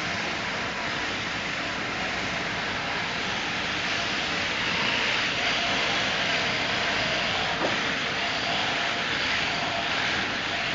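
Sheep-shearing handpiece, driven by an overhead motor, running steadily as its four-tooth cutter slides back and forth over the comb through a sheep's fleece. A short click comes about three-quarters of the way through.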